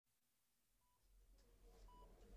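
Faint hospital patient-monitor beeps, short single-pitched tones about once a second, over quiet room tone.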